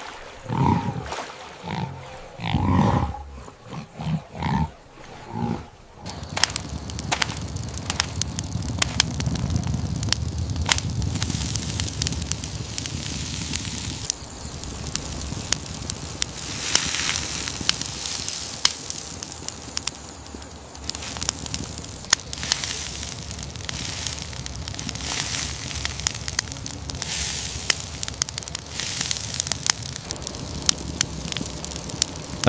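A hippo grunting several times in the first few seconds, then a campfire crackling and popping over a steady low rush of flame for the rest.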